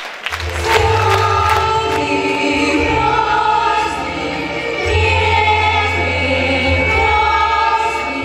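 Children's choir singing slow, long held notes over a steady low accompaniment.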